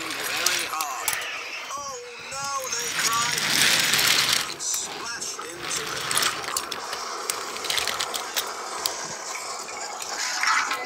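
Small die-cast toy engine and trucks clicking and rattling as they are pushed by hand along plastic toy track. Voice-like gliding sounds run through the first few seconds. A burst of rushing noise comes about three to four and a half seconds in.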